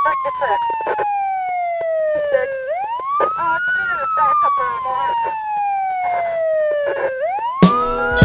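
A wailing siren in the intro of a hip-hop track, each wail rising quickly and falling slowly, about every four and a half seconds, with a man's voice talking over it. The drums and music come in near the end.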